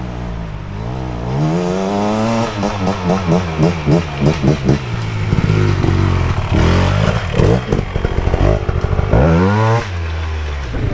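Trail motorcycle climbing a muddy track, its engine revving up and down in quick throttle blips about three a second as it comes closer. It then runs rougher with some clatter, and gives one rising rev near the end.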